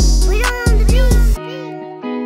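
Trap-style hip-hop instrumental: deep 808 bass hits and hi-hats under a sliding, arching melodic sample that rises and falls in pitch, meow-like. The drums and bass cut out about two-thirds of the way through, leaving sustained chords.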